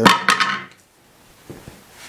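A man's spoken phrase trails off, then a short pause of quiet room tone with one faint knock about one and a half seconds in.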